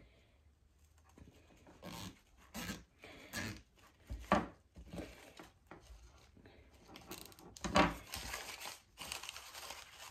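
Artificial flower stems and leaves rustling and crinkling as they are handled and fastened onto a coiled garden hose with a plastic zip tie. The sound comes in short, irregular bursts and gets busier near the end.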